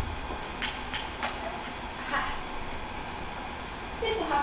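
Faint, indistinct voices from a theatre stage over a steady low hum in the hall, with a couple of small sharp clicks in the first second and a half.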